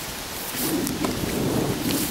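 Rustling and brushing of leaves and branches with rumbling handling noise on the microphone, as someone pushes through dense undergrowth on foot.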